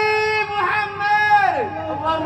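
Male Quran reciter (qari) chanting tilawah in a high voice. He holds long notes with brief melodic ornaments, then the pitch drops steeply near the end.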